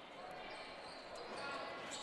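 Faint sounds of basketball play on a gym floor: a ball bouncing against low, steady hall ambience.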